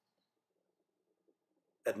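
Near silence, then a man's narrating voice starts near the end.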